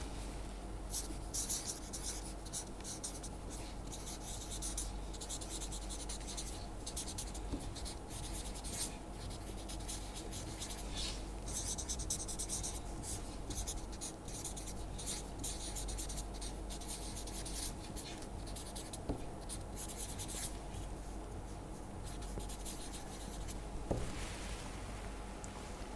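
Felt-tip marker writing on paper: irregular runs of short, high scratchy strokes as words are handwritten, over a steady low hum.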